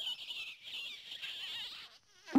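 A quiet, high-pitched warbling cartoon sound effect with a wavering pitch and no music under it.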